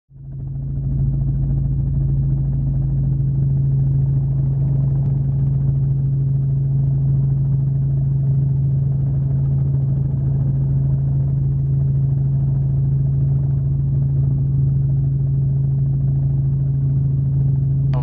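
Helicopter in flight, heard from inside the cabin: a steady, loud drone with a strong low hum that fades in over the first second and holds unchanged.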